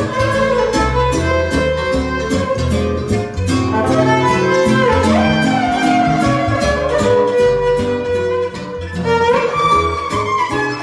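Violin playing a lively melody with sliding notes over a live band accompaniment of bass, a steady beat and a cimbalom.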